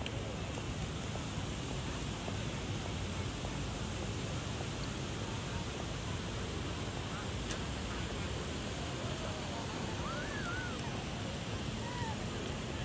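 Steady outdoor background noise with faint, indistinct voices of people around, and a brief rising-and-falling voice or call near the end.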